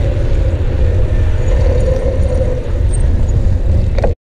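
Wind rumbling on a bicycle-mounted action camera's microphone while riding, mixed with tyre and road noise on a wet lane: a loud, steady low rumble.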